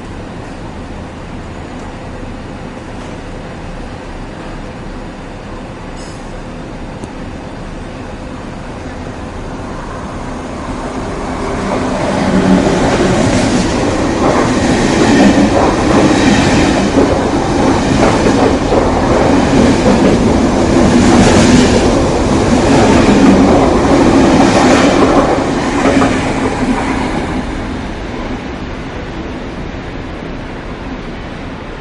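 KTT intercity through train, double-deck coaches with a Lok 2000 electric locomotive, running through a station at speed without stopping. A low rumble builds from about ten seconds in to a loud rush of wheels on rail with regular clatter, then dies away near the end.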